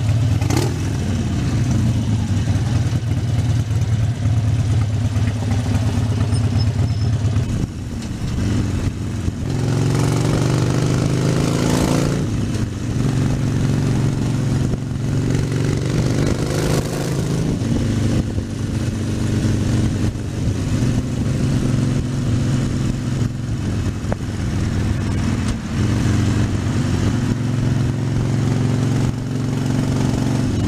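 Harley-Davidson Sportster 72's 1200cc air-cooled V-twin engine running steadily under way, with wind noise over the microphone. Twice, about ten and sixteen seconds in, the engine pitch climbs as the bike accelerates, then drops back.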